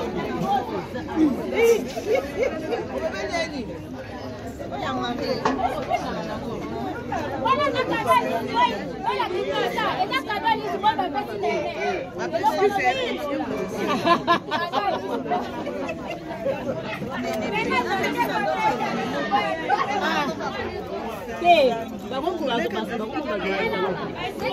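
Several people talking over one another in lively group chatter, voices overlapping with no pause.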